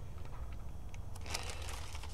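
Clear plastic zip bag crinkling briefly in the hands, about a second and a half in, over a steady low room hum.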